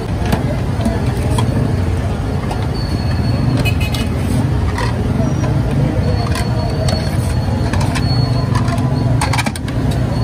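Busy street-food stall noise: a steady low rumble with sharp clinks of plates and utensils several times, thickest near the end, and voices behind.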